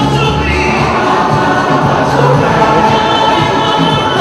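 Choir singing with musical accompaniment, loud and steady.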